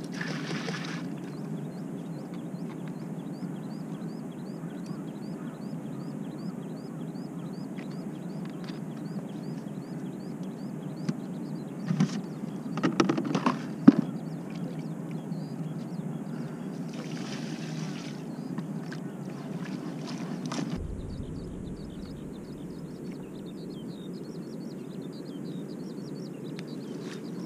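Steady low outdoor rumble with a short, high chirp repeating about twice a second. Around the middle come a few sharp knocks and clatters of plastic groundbait bowls and tubs being handled.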